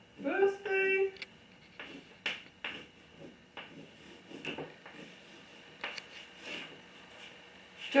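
Chalk writing on a blackboard: irregular short scratching strokes and taps as letters are written. A brief voice sounds near the start.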